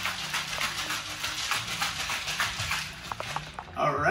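Ice rattling inside a stainless-steel cocktail shaker being shaken hard to chill a drink, a fast, even, rhythmic rattle that stops about three and a half seconds in.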